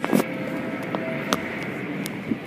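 Automatic car wash running, with a steady wash of machinery and water noise as cloth mitter strips sweep over a pickup. A loud burst of noise comes right at the start, and a sharp knock about a second and a half in.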